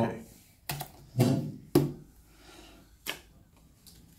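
Playing cards handled in the hands: a few sharp card snaps and clicks, spread irregularly over the few seconds.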